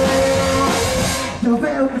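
Live rock band playing loud: distorted guitars and drum kit with held notes. Near the end the drums and cymbals drop out for a moment, leaving only a few held notes.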